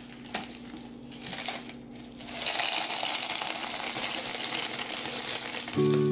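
Expanded clay pebbles (LECA/Hydroton) poured from a plastic cup into a glass container: a few single clicks, then a steady clattering stream from about two and a half seconds in. Acoustic guitar music comes in at the very end.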